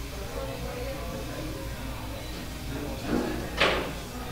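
Quiet pool-hall room sound with faint background music; near the end, the sharp click of a pool shot, the cue ball striking the object balls.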